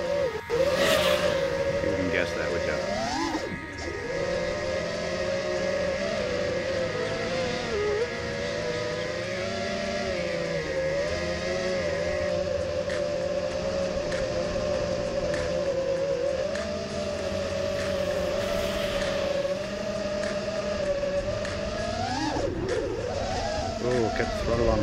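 FPV racing quadcopter (Eachine Wizard X220 on 5045 props) with its motors and propellers whining steadily in flight. The pitch wavers with throttle and rises sharply as the throttle is punched, briefly about three seconds in and again near the end.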